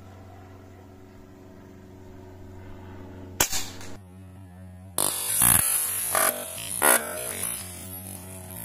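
A single shot from a Hatsan Vectis .22 (5.5 mm) PCP air rifle a little after three seconds in. From about five seconds the pellet's hit shatters a glass bottle, giving a loud spell of breaking glass.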